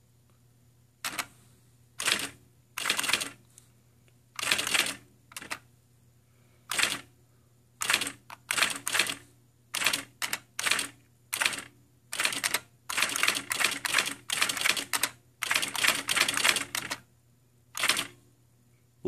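IBM Personal Wheelwriter 2 electronic daisy-wheel typewriter typing: bursts of rapid print-wheel strikes with short pauses between them. The runs grow longer and denser in the last few seconds.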